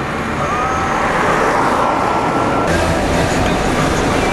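A car driving through city traffic, heard from inside the car: steady road and engine noise.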